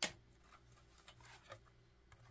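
Near silence with a few faint, short handling sounds: a ring binder's page and paper money being moved and the binder's plastic pocket being touched.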